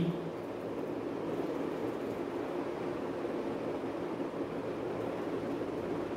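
Steady, even background hiss of room noise, with no distinct events.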